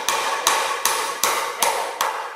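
A run of hammer blows, evenly spaced at about two and a half a second, each with a short ring.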